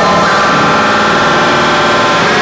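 Loud, noisy electric guitar drone run through a chain of effects pedals: a steady held wash of tones that starts suddenly and shifts near the end.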